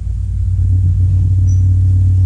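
A loud, steady low hum with little else above it.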